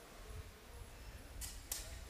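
Two short, sharp clicks about a third of a second apart, the second louder, over a faint low rumble.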